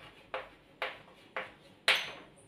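Chalk striking and scraping on a blackboard while words are written: four sharp strokes about half a second apart, the last the loudest.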